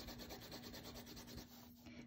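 Colored pencil shading on paper: faint, quick, repeated scratchy strokes that thin out near the end.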